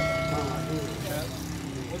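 A struck steel utensil ringing and fading out within the first second, with people talking in the background over a steady low hum.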